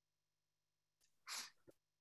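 Near silence, broken once about a second and a half in by a short, soft breath-like sound.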